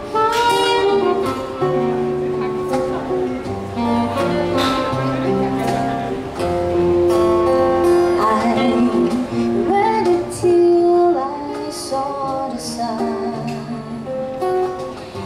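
A small live acoustic band playing an instrumental intro: a saxophone carrying the melody in long held notes over strummed acoustic guitar, with low bass notes and light percussion hits.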